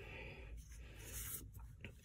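Faint rustling and sliding of paper sticker sheets being handled, with a brief scrape of paper on paper partway through.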